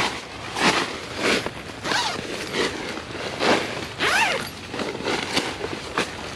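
Tent zipper pulled along a nylon side vent panel in a run of short rasping strokes as the panel is unzipped and lowered.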